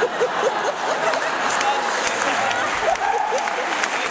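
Audience applause, many hands clapping steadily, with laughter and voices mixed in.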